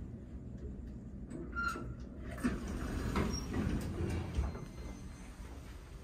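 Otis elevator's sliding doors opening. A short single tone sounds about one and a half seconds in, then a run of clunks and rumbling over the next couple of seconds as the doors move.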